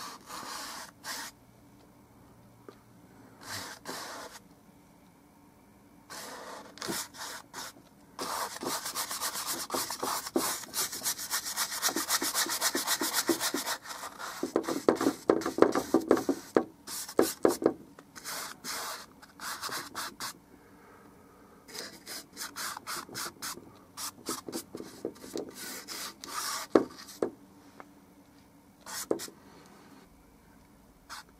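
A paintbrush scrubbing paint onto a stretched canvas in quick back-and-forth strokes. The strokes come in short bursts, with one long stretch of continuous scrubbing in the middle.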